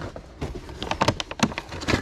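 Plastic-packaged parts clattering and rustling in a cardboard box as a hand digs through them, a quick string of irregular clicks and knocks.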